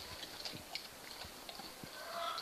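A horse chewing close up, with a few faint irregular crunching clicks, about five in two seconds.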